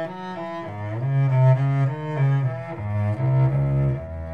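Instrumental passage of a 19th-century Russian romance played by a small salon ensemble: a melody moving quickly note by note over low bass notes that change about once a second.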